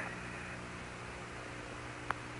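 Steady hiss of the Apollo air-to-ground radio voice link between transmissions, with a faint low hum underneath.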